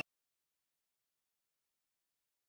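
Silence: the sound cuts off abruptly at the start and nothing at all is heard.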